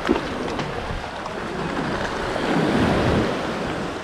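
Small waves washing through shallow water at the water's edge, with wind buffeting the microphone; a short knock right at the start.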